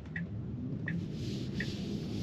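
Low steady road and tyre hum inside a Tesla cabin as the car pulls away at low speed, with faint, evenly spaced clicks about 0.7 s apart, the ticking of the turn signal.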